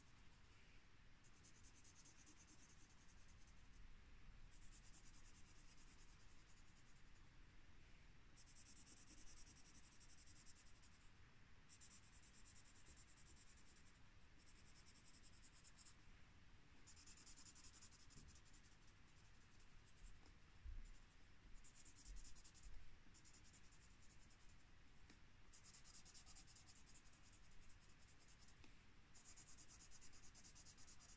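Felt-tip marker scratching back and forth on sketchbook paper while colouring in, faint, in spells of a second or two with short pauses between strokes. A few soft low bumps come about two-thirds of the way through.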